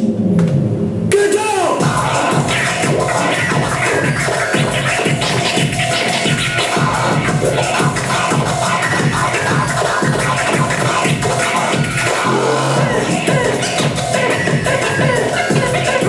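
Hip-hop DJ scratching on Pioneer CDJ jog wheels over a beat: rapid back-and-forth scratches of samples, making quick sliding pitch sweeps. The sound is muffled for the first second, then opens up to full brightness.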